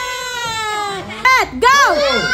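A high-pitched voice holds a long drawn-out cry that slowly falls in pitch, then breaks into a couple of short squeals that rise and fall about a second in.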